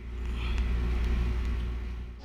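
A deep, sustained 808 bass drum sample playing back in GarageBand on an iPhone: a long low rumble that eases off near the end.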